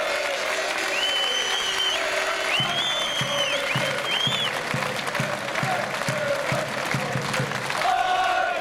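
Large outdoor crowd of football supporters applauding and cheering at the end of a speech, with a few high whistles early on. About two and a half seconds in, a steady beat joins the applause at roughly two to three strokes a second.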